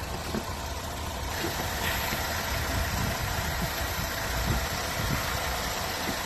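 A car engine idling, a steady low rumble with a hiss over it that grows brighter about a second in.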